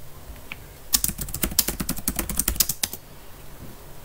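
Typing on a computer keyboard: a quick run of keystrokes starting about a second in and stopping about two seconds later.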